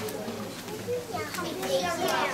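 Children's voices calling out answers from an audience, several at once and overlapping.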